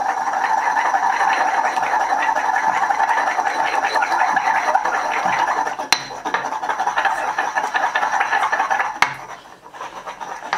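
Granite pestle grinding rapidly round a granite mortar of hand sanitizer: a fast, continuous stone-on-stone scraping. There is a sharp click about six seconds in and another near the end, where the grinding slackens.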